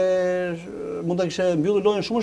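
A man's voice holding one long, steady hesitation vowel for about half a second, then going on speaking.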